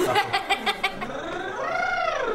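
High-pitched excited laughter in about six quick pulses during the first second, then a long squeal that rises and falls in pitch.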